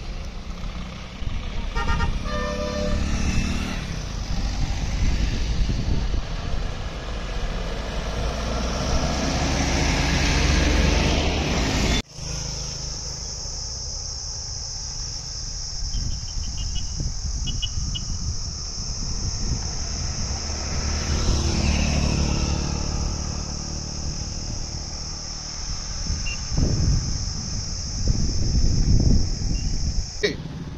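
Cars driving past on a road, with a car horn sounding briefly about two seconds in. About twelve seconds in the sound cuts suddenly to quieter road noise with a steady high hiss.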